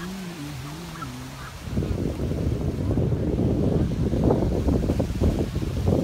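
A person hums a short wavering tune for about a second and a half, then wind buffets the microphone with a louder, uneven low rumble.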